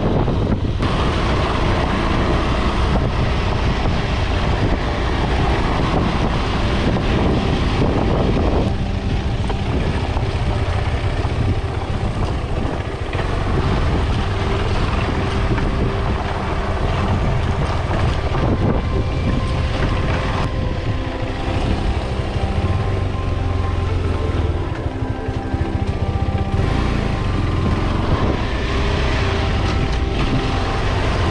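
KTM 390 Adventure's single-cylinder engine running as the motorcycle is ridden along a dirt trail, with wind rumbling on the microphone.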